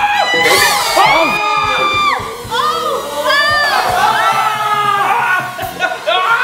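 Several people shrieking and yelling excitedly, with long drawn-out screams that rise and fall.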